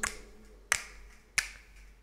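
Two sharp finger snaps about two-thirds of a second apart, marking out the beats of a recording count-in.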